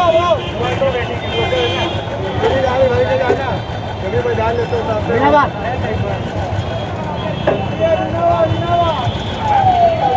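Busy street ambience: a steady low traffic rumble with people talking, and a repeated falling tone near the end.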